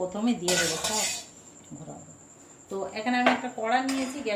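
Kitchenware clattering: a brief rattle of bowls and utensils about half a second in.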